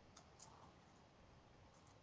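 Near silence: room tone in a pause of speech, with two or three faint clicks in the first half second.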